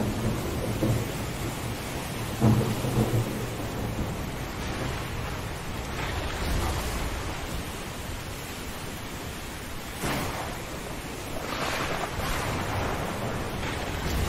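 Steady rain with low rolls of thunder. The strongest rumbles come near the start, with another swell of rumbling later on.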